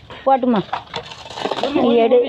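Light clinking and jingling, like small metal objects, for about a second between snatches of talk.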